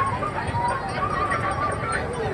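Crowd hubbub among busy fair stalls, with a drawn-out, slightly wavering high call held for about a second in the middle.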